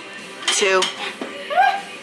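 A voice counting "two" aloud during a dumbbell split-squat set. Between the words there are a few short metallic clinks from the hand-held dumbbells.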